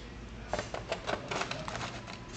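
Light, irregular clicking and rattling of a cable and small plastic parts being handled, starting about half a second in.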